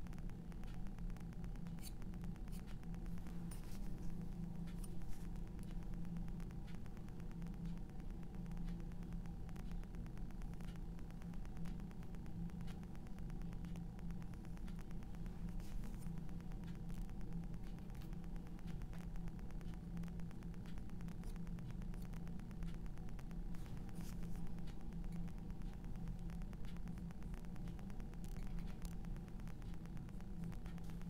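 Faint, scattered scratches and light taps of a metal palette knife laying oil paint onto a canvas, over a steady low hum.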